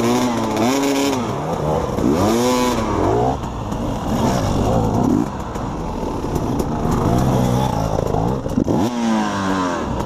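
KTM dirt bike engine revving hard in sharp rises and falls, then running lower and rougher, with another rev near the end. The bike slides off the trail edge and tips over into brush.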